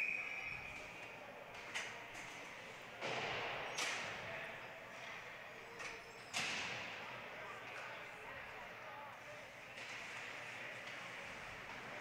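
Ice hockey rink sounds: skate blades scraping on the ice and sticks and puck knocking. A few sharp scrapes and knocks stand out, around three seconds and six seconds in, over a steady background of voices from the arena.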